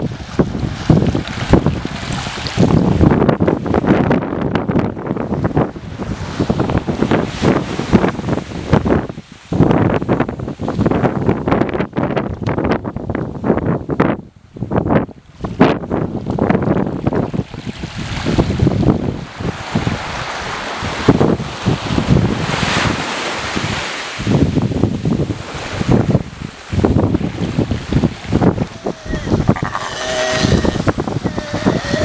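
Gusting wind buffeting the microphone over small waves washing onto a sand beach, the level rising and falling unevenly.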